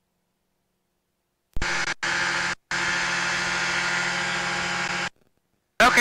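Steady drone of a light experimental aircraft's engine and propeller in flight, picked up by the pilot's headset microphone. It cuts in abruptly about one and a half seconds in, drops out for a moment twice, and cuts off abruptly about five seconds in, with dead silence around it.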